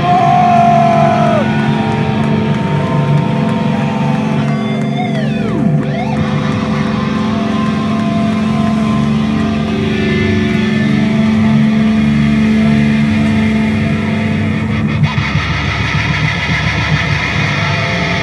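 Electric guitar feedback and sustained droning notes through a Randall amplifier stack, with pitch slides falling sharply a few times about five seconds in. A steady low note drops out about fifteen seconds in.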